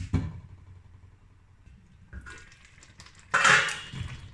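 A stainless steel pot lid knocks down onto a cooking pot at the start. After a quiet stretch it is lifted off with a short metallic clatter near the end.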